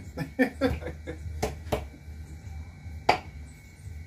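A man's brief laugh, then three sharp clicks or knocks, the last the loudest, over a steady low hum.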